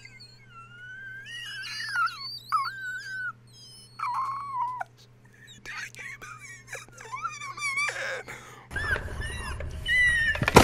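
A man's high-pitched, whining squeals of excitement, rising and falling in pitch. Near the end, a louder noisy burst cuts in.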